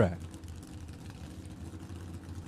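Faint, steady low rumble of a drag-racing car's engine idling.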